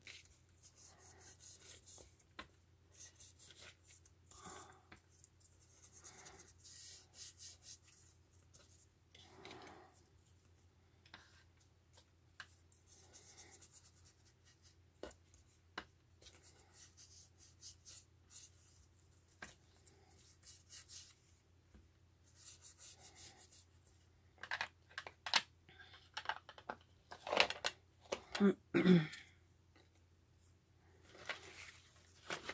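Ink blending tool dabbed on an ink pad and rubbed along the edges of corrugated cardboard strips: soft scratchy brushing strokes in short bursts, with a few louder bumps and rustles near the end.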